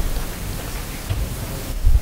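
Meeting-hall room noise while people move about and settle: a steady hiss with a few low thumps. The loudest thump comes near the end.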